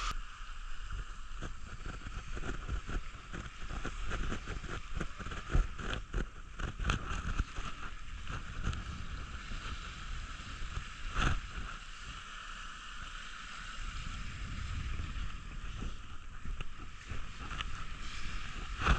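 Small waves washing onto a sandy beach, a steady surf hiss, with wind rumbling and knocking on the microphone and one louder knock about eleven seconds in.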